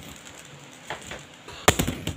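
A single click about a second in, then a quick cluster of sharp clicks and knocks near the end.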